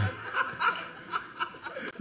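A small group of people laughing and chuckling in short, uneven bursts during a pause in a speech.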